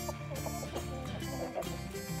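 A barred hen clucking as she is hand-fed, over background acoustic guitar music.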